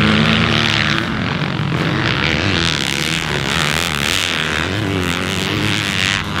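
2021 Yamaha YZ250F's 250cc four-stroke single-cylinder engine being ridden hard on a dirt track, its revs rising and falling with the throttle.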